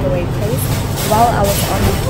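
Indistinct voices of people in a fast-food restaurant, over a steady low rumble.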